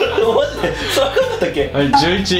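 Men chuckling and laughing.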